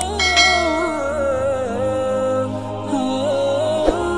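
Wordless vocal background music of long held and gently wavering notes, with a bright chime struck just after the start and a short click near the end.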